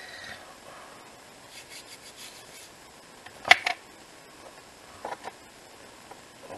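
Small paper-craft pieces handled on a cutting mat: light rubbing and rustling, a sharp knock about halfway through, and two softer taps near the end.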